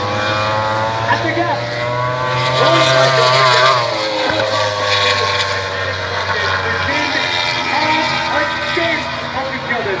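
MotoGP racing motorcycle engines heard from trackside, a bike's engine note swelling and falling in pitch as it passes about three seconds in, with other bikes' engines continuing further off.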